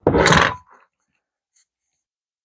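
Hydraulic hand crimper shifted on a wooden workbench: one short scrape and knock lasting about half a second, followed by a couple of faint clicks.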